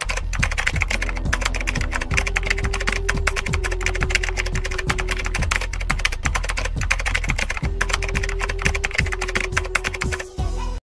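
Rapid computer-keyboard typing, many keystrokes a second, over background music with a steady low tone.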